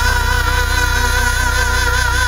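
Live soul band music: a male singer holds one long note with vibrato over a steady low chord from the band.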